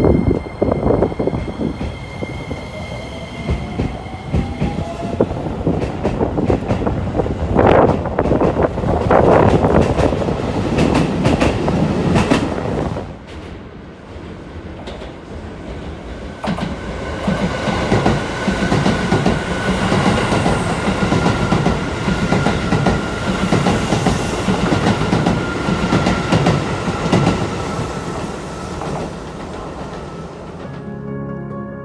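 A Keisei 3000-series electric commuter train pulls out, its motor whine rising in pitch as it speeds up, with wheels clacking over the rail joints. After an abrupt drop in level, another Keisei commuter train runs in with a high whine that slowly falls in pitch as it brakes.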